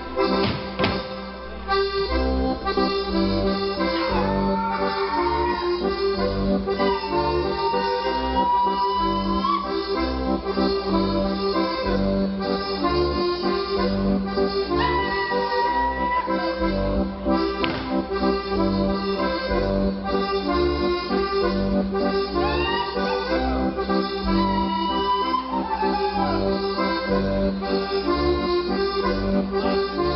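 Lively accordion-led folk dance tune with a steady beat, music for a Schuhplattler dance. A few sharp slaps cut through about a second in and again past the middle, and a high sliding tone rises over the music several times.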